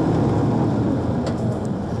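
Steady low rumble of a tour bus's engine and road noise, heard from inside the moving bus.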